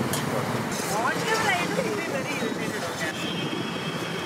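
Street ambience: indistinct background voices over a steady hum of traffic, with a couple of short clinks near the start.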